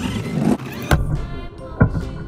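Remote-control toy car's small electric motor whirring as it drives on a plastic slide, with two sharp knocks, about a second in and near the end, over background music.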